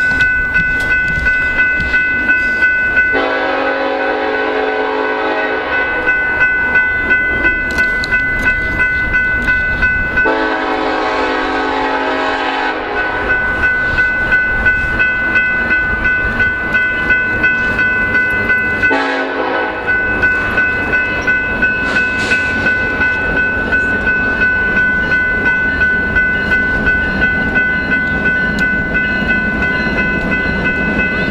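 A grade-crossing bell dings steadily throughout. A Nathan K5LLA five-chime air horn on a BNSF SD70ACE locomotive sounds three blasts: long, long, then short. After the horn, the rumble of the approaching locomotive and train grows louder.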